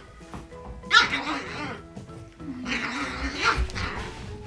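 A small puppy barking in play, with a sharp bark about a second in and more vocalising around three seconds, over background music.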